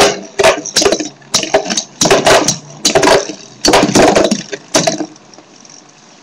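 Two Beyblade Metal Fusion spinning tops, Lightning L-Drago and Storm Pegasus, clashing with each other and against the plastic stadium wall just after launch. It is an irregular run of sharp clacks that dies away about five seconds in.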